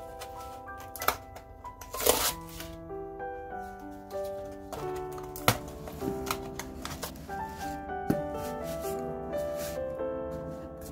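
Soft background music with melodic notes, over a spatula scraping and tapping against a stainless steel bowl while butter and sugar are mixed, with a few sharp clicks and a short louder scrape about two seconds in.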